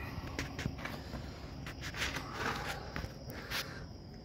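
Shuffling footsteps and light rustling and knocking from a person moving and crouching down, a few short irregular clicks.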